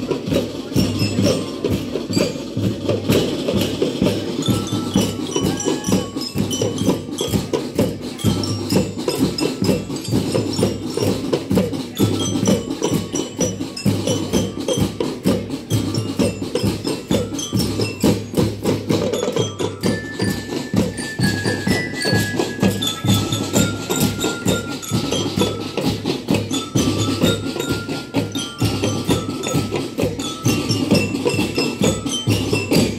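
Marching drum band playing: snare, tenor and bass drums beat a fast, steady pattern under a melody on mallet bells.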